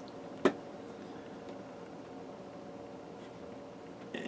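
Quiet handling of a cotton T-shirt as it is pinched and folded by hand over faint room tone, with one sharp click about half a second in.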